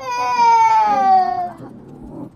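A toddler crying: one long, loud wail that slides slowly down in pitch and dies away about a second and a half in.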